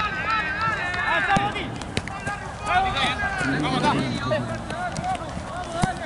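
Several voices shouting and calling out across a football pitch, overlapping one another, with a closer low voice about halfway through. A few sharp knocks of the ball being kicked, one near the end.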